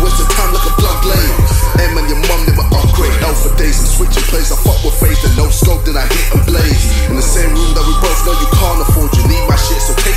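Hip hop track playing: a rapped verse over a heavy bass beat.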